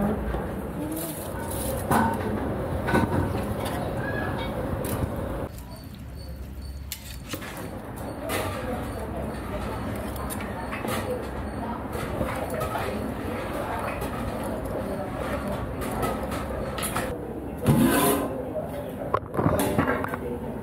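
Indistinct voices talking in the background, with a metal ladle stirring and knocking in a large aluminium pot of biryani rice and broth. The talk falls away for a moment about six seconds in.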